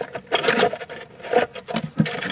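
Hands handling plastic parts and wiring inside a 3D printer's base: irregular rubbing and scraping with a few small clicks.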